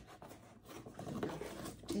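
Scissors slitting the packing tape on a cardboard box: irregular scraping and rubbing, growing busier after about a second.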